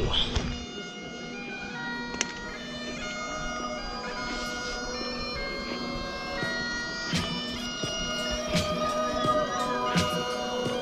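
Bagpipes playing a tune over a steady drone, coming in about half a second in as low rumbling noise drops away.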